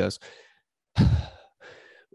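A man's heavy sigh: a loud, breathy exhale blown close into the microphone about a second in, fading over half a second, followed by a softer breath near the end.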